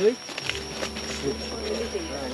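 Indistinct talk from several people on a forest trail, over a steady high-pitched insect drone.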